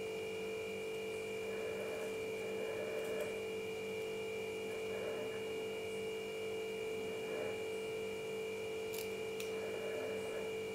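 Steady electrical hum made of several fixed tones, with a few faint short snips of scissors cutting cotton cloth, two of them close together near the end.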